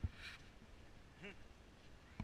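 A single short, faint quack-like call about a second in. A footstep scuffs the sandy path at the start.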